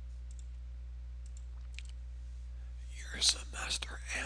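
A pause in a man's talk filled by a steady low electrical hum, with a few faint clicks in the first two seconds; his voice comes back about three seconds in.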